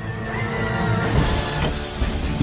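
Film score music growing louder, with a noisy sound effect mixed in.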